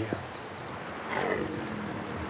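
Corsican red deer stag bellowing in the rut: a hoarse, drawn-out call that starts just under a second in and falls in pitch.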